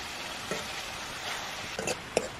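Pork and vegetables sizzling steadily in a metal wok, stirred with a metal ladle that knocks against the pan about half a second in and a few times near the end.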